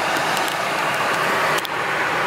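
Steady rush of the air-conditioning blower and the idling engine of a Chevy Traverse, heard inside the cabin, running again after the blocked AC condensate drain was cleared. A light click comes near the end.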